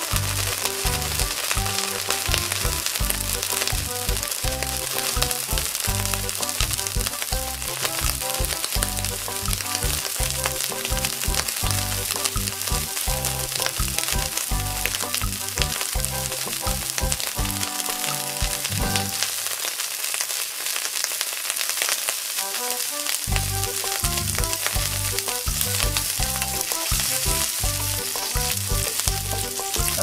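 Dried shrimp sizzling as they fry in hot oil in a wok, a steady fine hiss throughout.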